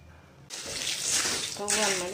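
Puffed rice rustling as it is stirred in a pan: a sudden rush of dry, hissing noise about half a second in that keeps going.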